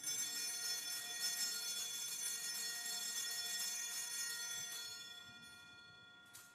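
Altar bells (Sanctus bells) shaken at the elevation of the consecrated host, marking the moment of consecration. The bright, many-toned ringing starts suddenly, holds steady, and dies away over the last second or so.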